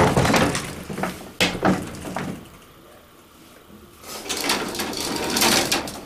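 Clicks and knocks from handling a metal elevator gate in a small cab, a short lull, then the gate rattling as it slides open.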